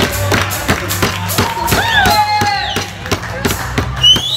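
A group clapping in time, about three claps a second, with voices singing and calling out over it.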